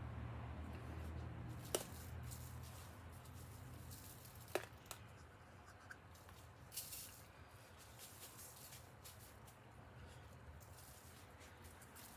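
Crushed glass glitter being sprinkled by hand onto a canvas: faint, with a couple of light clicks and a short soft patter, over a low steady hum.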